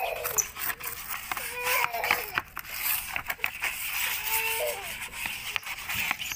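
Sponge scrubbing and wiping a wet plastic tray with water, giving a steady swishing with short scrapes. A cat meows twice in the background, about a second and a half in and again past the four-second mark.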